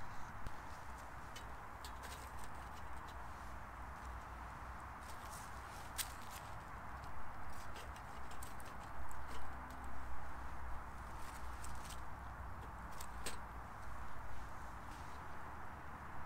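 Wood fire crackling in a small titanium wood stove, with scattered sharp pops and a few knocks as sticks are pushed down into it.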